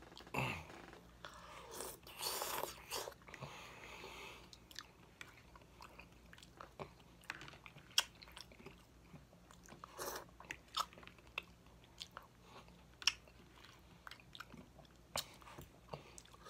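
Close-miked chewing and wet mouth sounds of a person eating baked chicken, denser in the first few seconds. Many short sharp clicks and smacks are scattered through the rest, from lips and the fork.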